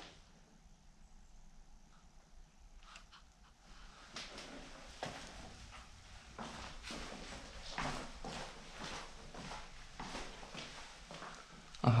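Quiet footsteps going down bare concrete stairs. They start about four seconds in as slow, uneven steps.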